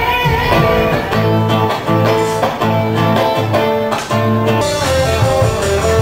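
Rock-and-roll band music: an instrumental passage with a repeated guitar riff of short plucked notes over a bass line, and no singing.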